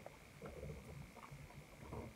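Very quiet room tone with a faint, uneven low rumble and no distinct event.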